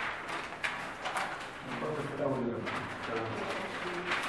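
Paper ballots rustling and shuffling as they are handled and sorted by hand on a table, with indistinct voices talking from about halfway through.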